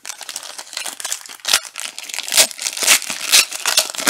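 Foil wrapper of a Gold Standard soccer card pack crinkling in the hands and being torn open, with several sharp, loud crackles from about halfway through to near the end.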